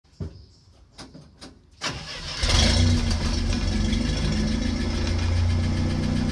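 International Scout 800's engine starting: a few short knocks during the first two seconds, then it catches about two and a half seconds in and settles into a steady idle.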